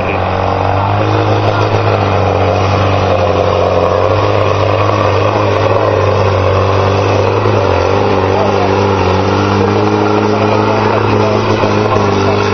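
Modified pulling tractor's diesel engine running flat out under heavy load as it drags a weight-transfer sled, a loud, steady note held at nearly constant pitch throughout the pull.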